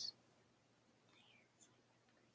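Near silence: room tone, with the tail of a girl's speech cutting off at the very start and a faint click about one and a half seconds in.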